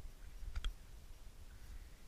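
Two faint, sharp clicks in quick succession about half a second in, over a low, steady rumble.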